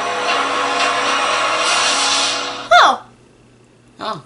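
Television drama soundtrack: a dense score with held tones, which ends about three quarters of the way through in a loud sound sweeping down in pitch, followed by a quiet stretch.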